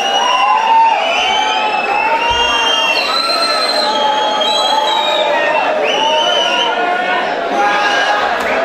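Audience crowd cheering and shouting, many voices overlapping with high held calls.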